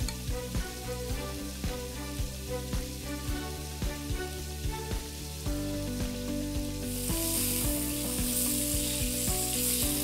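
Pieces of mutton sizzling as they fry in hot mustard oil in a pan, stirred with a wooden spoon that knocks lightly against the pan. The sizzling grows louder about seven seconds in.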